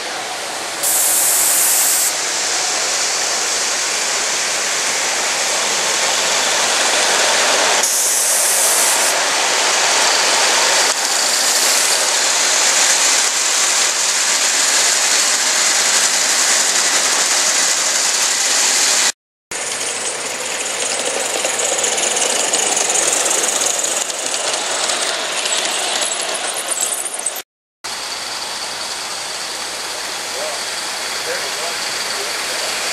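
Live steam model locomotive running with a freight train, steam hissing over the running noise of the engine and cars on the rails. There are louder spells of high-pitched steam hiss about a second in and again around eight seconds. The sound cuts out briefly twice, past the middle and near the end.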